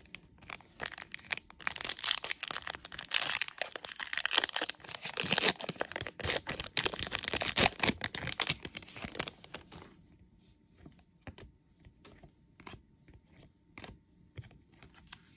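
A foil trading-card pack wrapper being torn open and crinkled in the hands, a dense crackling that lasts about nine seconds, then a few faint clicks of card handling near the end.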